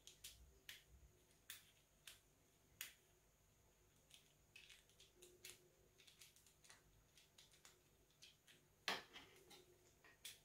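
Faint, scattered small clicks and ticks of a precision screwdriver and the plastic thumb-throttle housing being handled while a small screw is backed out, with one sharper click about nine seconds in.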